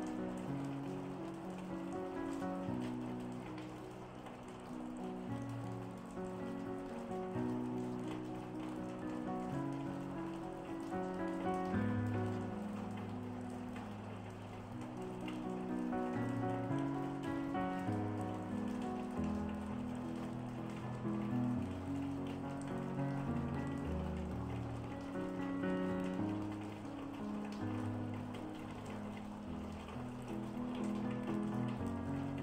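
Calm piano music with long held notes, over a steady patter of rain.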